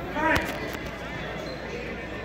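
A brief voice and a sharp smack about a third of a second in, followed by a couple of fainter knocks, over the steady murmur of a gym hall at a boxing bout.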